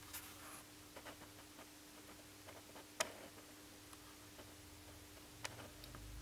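Faint handling clicks from a hand-held Sony TC-61 cassette recorder, with one sharper click about three seconds in and another near the end, over a faint steady hum.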